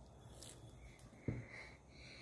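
Quiet room tone with one short, low thump a little past halfway.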